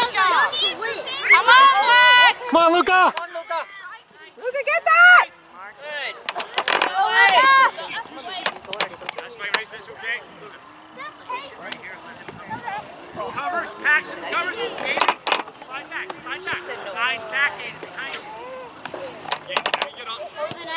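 Indistinct shouting and calling from spectators and players across an open soccer field. The voices are loud and high-pitched in the first few seconds, with one long drawn-out shout, then quieter scattered calls with a few sharp knocks.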